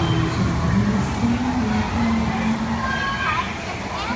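Ambience inside the Pirates of the Caribbean boat ride: a steady rushing background with indistinct voices, a held low note that steps up in pitch, and a few short higher calls near the end.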